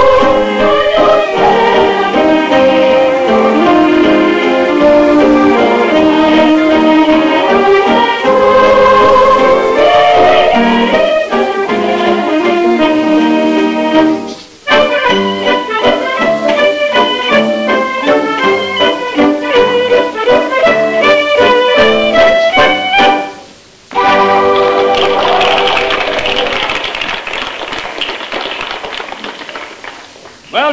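Instrumental Scottish music with a fiddle leading the tune over accompaniment, heard through an old off-air reel-to-reel tape recording. It breaks off briefly twice. About 24 seconds in it gives way to a steady, fading patter, likely applause.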